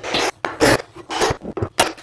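Steel flat pry bar scraping and levering a hardwood floorboard to close the gap on the last row, followed by a few short, sharp knocks near the end.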